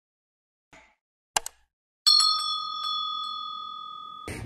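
Subscribe-button animation sound effects: a faint short whoosh, a sharp mouse click, then a bell ding whose clear tones ring out and fade over about two seconds.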